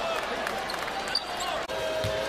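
Basketball arena ambience: crowd murmur with faint sneaker squeaks on the hardwood court, broken by a sudden cut near the end.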